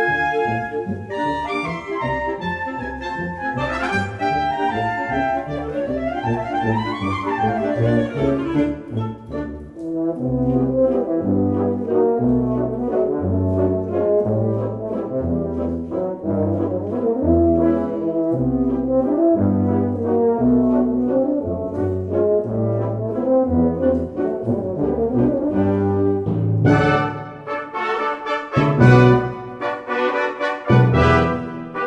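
Concert band (wind orchestra) playing a brass-heavy passage. In the first seconds a line of notes sweeps up and back down. Then low brass chords sound over a pulsing bass line, and the full band comes in brighter and louder near the end.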